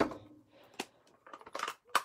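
A few sharp clicks and taps of plastic stamping supplies handled on a tabletop: a clear acrylic stamp block set down and a plastic ink pad case picked up, with a cluster of clicks in the second half.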